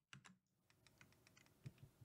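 Faint, scattered clicks of a computer keyboard as keys are pressed, barely above silence.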